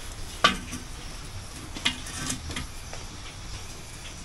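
A few sharp clicks and knocks with light rattling from the metal frame of a pop-up gazebo being handled overhead, the loudest about half a second in and another just before two seconds.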